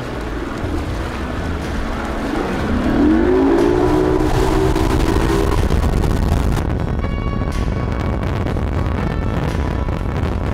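Outboard motor of a bass boat running at speed over water, with the rush of water and background music. About two and a half seconds in, a pitched tone rises and then holds steady for about three seconds, the loudest part.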